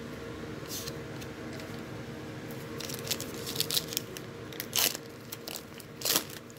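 Trading cards being handled, then a foil card-pack wrapper crinkling and tearing open in a run of sharp crackles during the second half, over a steady low hum.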